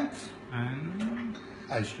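A man's low voice: a drawn-out rising 'hmm' and short murmurs, over a faint steady hum, with a single light click about halfway.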